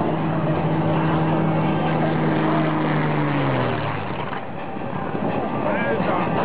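Aircraft engine droning as the plane flies past, a steady hum that drops in pitch about three and a half seconds in and then fades, over crowd chatter.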